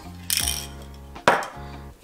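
Two sharp clinks of metal Tamiya spray-paint cans knocking against each other as they are handled, about half a second in and again past halfway, the second louder, over steady background music.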